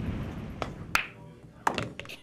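A low rumble fades over the first second, then pool balls clack sharply against each other, three hard clicks within a second and a half.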